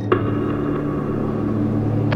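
A low, steady rumbling drone from the video's soundtrack, opening with a sharp hit just after the start.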